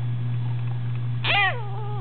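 A baby's high-pitched squealing vocalisation, starting about a second in, falling in pitch and then held for about a second, over a steady low hum.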